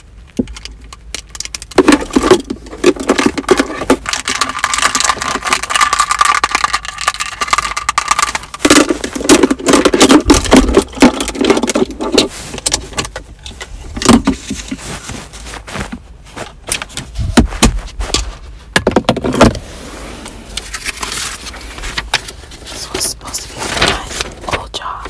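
Long acrylic fingernails tapping, scratching and rummaging among objects in a car's centre console, with small hard items rattling and jangling. The clicks and scrapes come in dense runs with short pauses between them.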